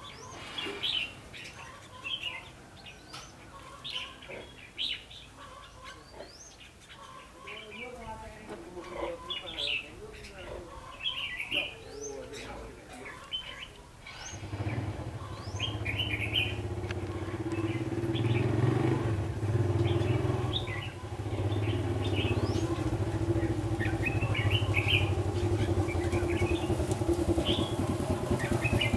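Red-whiskered bulbul song: short, repeated chirping phrases. From about halfway through, a vehicle engine drones steadily underneath and grows louder.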